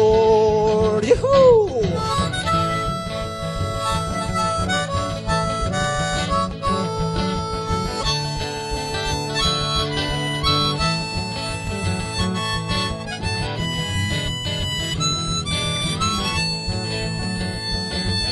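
Instrumental break of a country-style song: a harmonica solo of held notes over a steady beat from the backing band. The last sung word fades out in the first two seconds.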